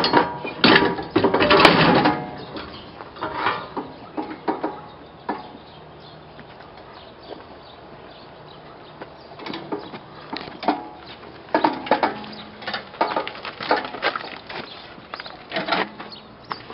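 Metal clanking and rattling as a walk-behind chain trencher is worked off a pickup's hitch-mounted lift and wheeled down: a loud run of clanks in the first two seconds, a quieter stretch in the middle, then scattered knocks and rattles again in the second half. The trencher's engine is not running.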